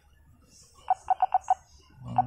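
ZKTeco SpeedFace-V4L M1 terminal's touchscreen keypad giving five short electronic beeps in quick succession, one for each digit tapped. The beeps come about a second in, all at the same pitch, within about half a second.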